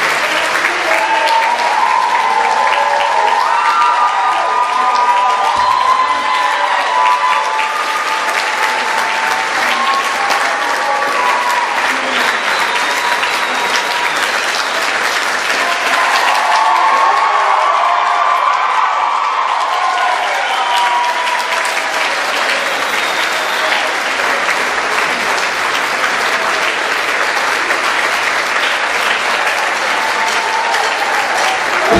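Audience applauding and cheering steadily, with voices shouting and whooping over the clapping, loudest in the first few seconds and again about halfway through.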